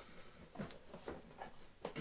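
A few faint scuffs and light taps of a cardboard box being turned around in the hands.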